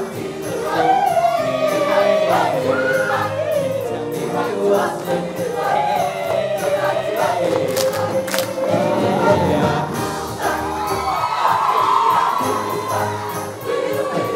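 A large mixed show choir singing with instrumental accompaniment.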